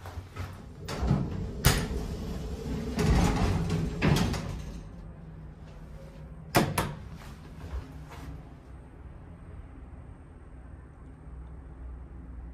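Schindler 300A elevator's sliding car doors moving, with sharp clunks from the door mechanism and a loud rushing stretch a few seconds in. A quick pair of sharp clicks follows, about six and a half seconds in, then a low steady hum.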